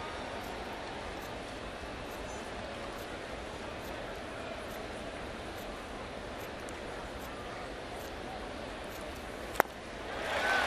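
Steady murmur of a baseball stadium crowd, with one sharp pop near the end as the pitch smacks into the catcher's mitt on a swinging strike.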